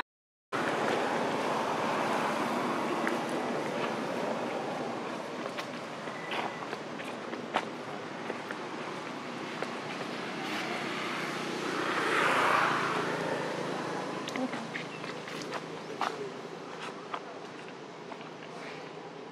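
Steady outdoor background noise with scattered small clicks and taps, swelling briefly about two-thirds of the way through and fading slightly toward the end, after a half-second dropout at the very start.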